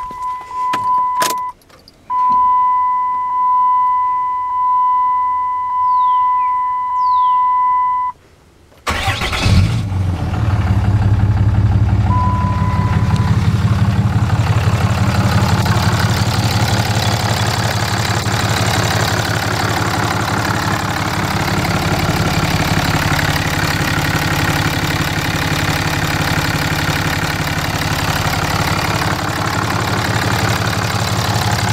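A 2007 Dodge Ram 3500's warning chime dings repeatedly, about once a second. About nine seconds in, the truck's diesel engine cranks, catches and settles into a steady idle, and a short beep sounds a few seconds after it starts.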